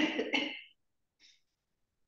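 A person clearing their throat: two quick rough coughs back to back, then a faint short sound about a second later.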